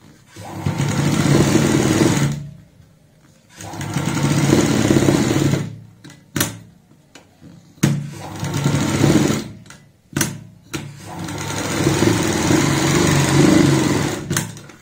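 Domestic sewing machine stitching in four runs of a couple of seconds each, with short pauses and a few clicks between them as the fabric is turned: topstitching a pocket flap.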